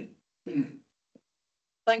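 A person clearing their throat once, briefly, just before speaking.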